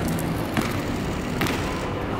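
Steady city background noise outdoors, with two light knocks about half a second and a second and a half in.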